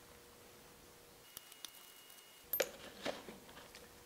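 Quiet room tone with a few faint small metallic clicks and taps, the sharpest about two and a half seconds in and another about half a second later: a screwdriver working at a small set-screw plug in the cast-iron cone drive pulley of a lathe headstock.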